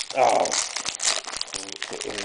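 Trading cards being handled and flipped through by hand: a run of quick, dry rustles and clicks as card slides against card.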